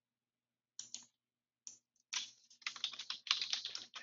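Typing on a computer keyboard: a few single clicks, then a quick run of key clicks starting about halfway through.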